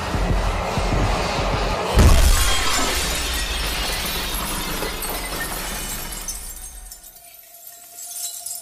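A sudden loud crash about two seconds in, followed by a spray of smaller crackling, breaking bits that die away over the next several seconds, over a low droning film score.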